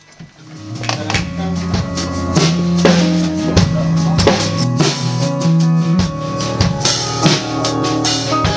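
A live band starts playing: drum kit with kick and snare hits over bass and keyboard chords, swelling in from quiet during the first second and then playing on steadily.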